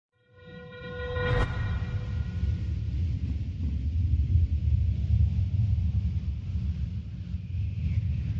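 Intro sound effect: a horn-like blast lasting about a second and a half, ending on a sharp hit, over a deep, steady rumble that swells in and carries on throughout.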